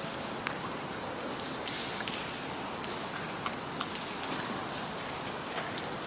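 Light rain falling on wet concrete and puddles: a steady hiss with scattered faint ticks.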